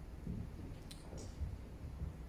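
Quiet room tone in a pause, with a single faint click about a second in.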